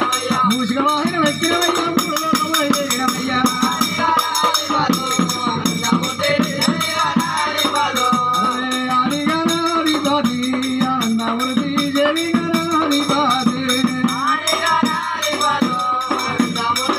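Devotional bhajan: a male voice sings a rising and falling melody over a steady beat on a steel-shelled barrel drum (dholak) and jingling hand percussion.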